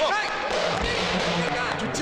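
Several voices shouting over one another in a commotion, with a dull thump a little under a second in.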